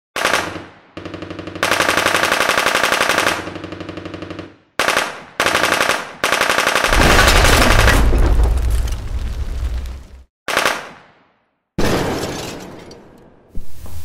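Bursts of rapid automatic gunfire, each lasting a second or more, followed about seven seconds in by a long, loud, deep rumble and two shorter blasts that die away. These are war sounds of destruction laid on as a soundtrack.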